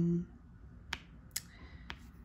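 Three short, sharp clicks about half a second apart as a diamond painting drill pen sets drills onto the canvas.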